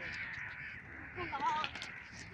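Background chatter of children's voices with short high calls and shouts, the most prominent about one and a half seconds in.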